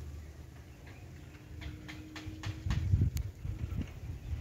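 Scattered, irregular light clicks and ticks over a low rumble on the microphone that grows louder about three seconds in.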